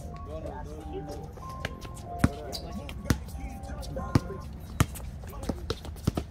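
Basketball bouncing on an outdoor concrete court: a string of sharp, irregularly spaced bounces, the loudest a little over two seconds in and about three seconds in, with more toward the end.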